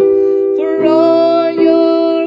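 A woman singing a slow gospel worship song over sustained keyboard chords, holding a long note with vibrato from about half a second in, then moving to another note.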